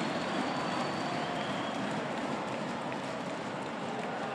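Steady murmur of a large indoor basketball crowd filling a packed arena, with no distinct cheers or impacts.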